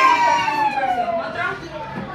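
Young children's voices in a long, drawn-out high call that falls slowly in pitch, then fades into scattered classroom chatter.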